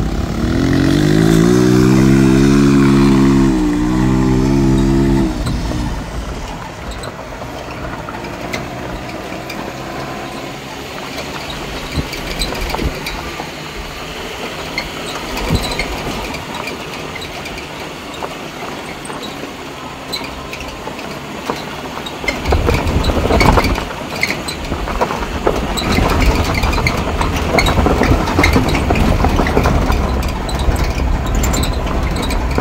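A motor vehicle's engine revs up over the first few seconds, with a short break in the rising pitch about four seconds in like a gear change. It then runs on along a rough dirt track in a steady, noisy rumble, with a loud jolt about 23 seconds in.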